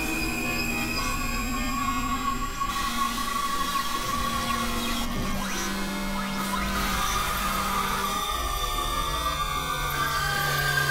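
Experimental synthesizer drone music: layered, sustained electronic tones that shift to new pitches every few seconds. A wavering low tone runs through the first few seconds, a new low note sits under the mix from about five to eight seconds in, and high whining tones sound above.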